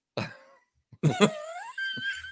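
A man laughing: a short breathy burst of laughter, then after a brief pause a drawn-out voiced laugh that rises in pitch.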